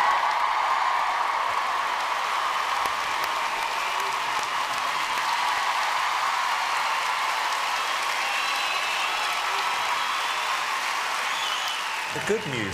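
Large arena audience applauding steadily, a dense wash of clapping with no break.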